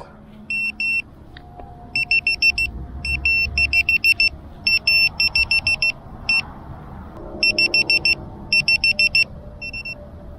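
ViFLY Beacon lost-model alarm buzzer sounding, with short high-pitched electronic beeps, about six a second, in groups broken by brief pauses.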